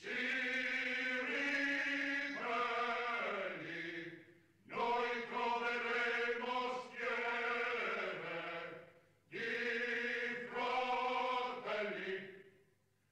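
Voices chanting in unison without instruments, in three long held phrases of about four seconds each, with brief pauses between them.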